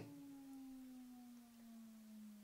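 Smartphone loudspeaker playing a speaker-cleaner app's low test tone: a faint, steady hum that slowly falls in pitch. The tone is meant to shake dust out of the phone's speaker.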